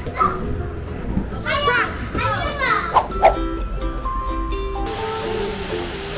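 High-pitched children's voices calling out as they play in a ball pit, over background music. About five seconds in, the sound changes to the steady rush of a waterfall under the music.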